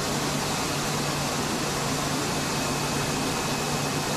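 Steady rushing noise of cooling water circulating through the Marconi transmitter's water cooling system and its flow monitors, with a steady low hum and a thin high tone underneath. The transmitter is in standby, but the cooling water keeps running.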